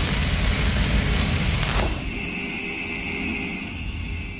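Record-label logo sound effect: the rumbling, noisy tail of a deep boom, with a falling whoosh just under two seconds in. It then settles into a quieter hiss with a thin high tone that fades away.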